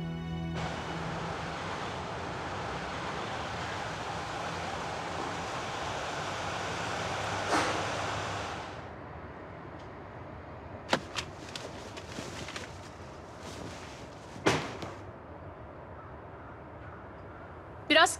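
A steady rushing noise for the first half, then several short car horn toots, the last one a little longer.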